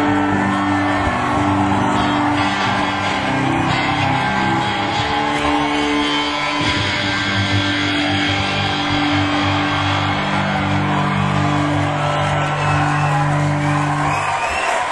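Electric guitar playing the closing chords of the song live, each chord ringing out, with the final chord held for the last few seconds.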